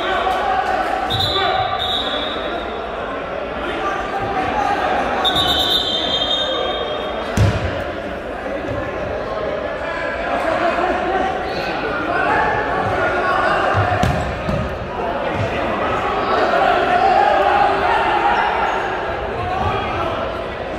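Futsal ball being kicked and thudding on a hardwood gym floor amid the voices of players and spectators, echoing in a large gymnasium; the sharpest thud comes about seven seconds in.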